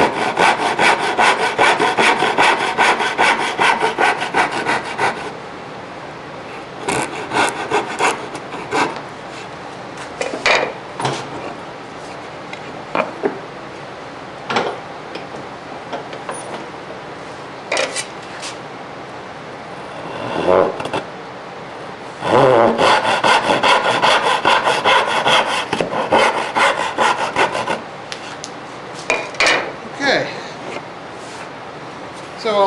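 Hand saw cutting dovetails in a curly maple board: a quick, regular run of sawing strokes for about five seconds, scattered short strokes through the middle, then another steady run of strokes in the second half.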